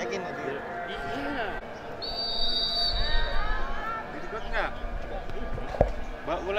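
A referee's whistle blown once for just under a second, signalling the restart of play. Shouting voices from players and onlookers follow, and a sharp thump comes near the end.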